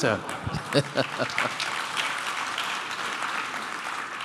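Audience applauding, the clapping fading away toward the end.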